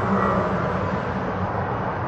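Steady background hum and hiss with a low drone, unchanging throughout.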